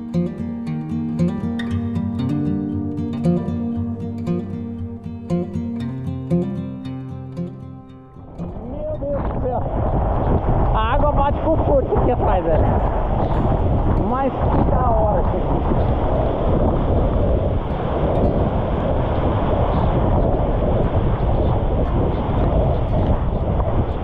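Background music for about the first eight seconds, then a sudden cut to the steady rushing of a waterfall plunging into its pool, heard from water level close by, with a man's brief exclamations.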